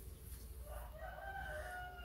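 A rooster crowing faintly: one long, held call that starts just under a second in.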